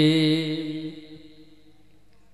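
A man's voice holding one long chanted note with a slight waver at the end of a phrase of melodic religious recitation, fading away about a second in and leaving only faint room noise.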